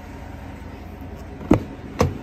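Pickup truck crew-cab door being opened: a sharp click of the latch releasing about a second and a half in, then a second clunk at the end as the door comes free. A steady low hum sits underneath.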